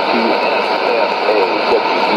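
Sony ICF-2001D shortwave receiver playing an AM broadcast on 9475 kHz: an announcer's voice, broken by short pauses, over a steady hiss of static, with the narrow, muffled sound of shortwave AM reception.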